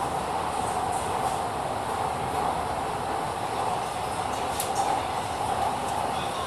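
Steady running noise of an elevated metro train heard from inside the carriage, an even rumble with a hum in the middle range. A brief click comes about four and a half seconds in.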